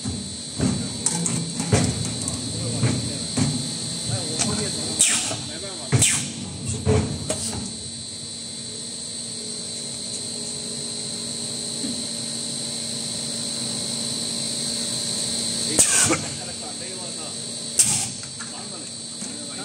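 Injection-blow molding machine running through its cycle: a steady high-pitched whine, with sharp pneumatic clicks and short blasts of air, the loudest about 16 seconds in and at the end.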